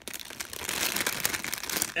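Thin clear plastic bag crinkling and rustling with many fine crackles as small rubber daruma erasers are pulled out of it.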